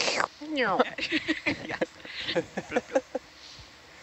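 Several people laughing in short bursts, some high and squealing with pitch sliding down, dying away about three seconds in. A faint steady background hiss remains.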